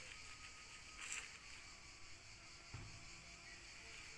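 Quiet background hiss with a brief soft rustle about a second in and a low soft thump near three seconds, from a gloved hand handling seedlings in a plastic seedling plug tray.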